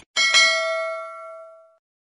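A bell-like chime struck twice in quick succession, the second strike louder, its ringing tones fading out over about a second and a half. A brief click comes at the very start.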